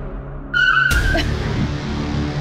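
A car's tyres screech briefly as it brakes hard to a stop, about half a second in, ending in a sharp hit. Dramatic background music runs throughout.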